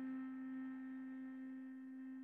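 A cello's final long held note, one steady pitch that fades slowly as the piece ends.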